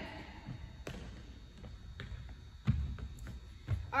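Sneaker footsteps on a hardwood gym floor: a few light taps, then two heavier thuds in the second half.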